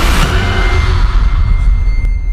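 Film-trailer sound design: a loud, deep rumble with a thin, high held tone over it, while the hiss above it fades away after the first moment.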